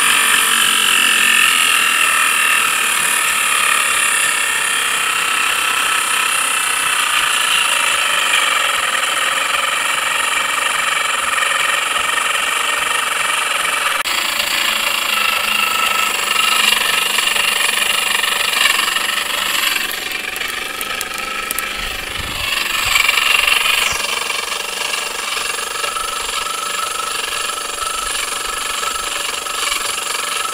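Pedal-driven vacuum blower running with a steady high whine, its impeller scraping against the housing. The bearings are off-centre, so the blower wheel rubs the casing and the pedaller meets heavy resistance. The sound shifts abruptly a few times.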